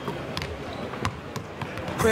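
Several basketballs being dribbled on a hardwood court, giving a run of irregular bounces that overlap.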